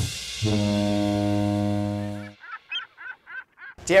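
A ship's horn sounds one steady, low blast of about two seconds, cut off sharply. It is followed by a quick run of about six short, high chirps.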